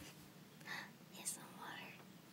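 Soft whispered speech in a few short phrases, low in level.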